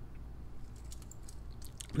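Faint clicks and rustles of a black steel link watch bracelet handled in the fingers as the watch is turned over, with a few clicks near the end, over a low steady hum.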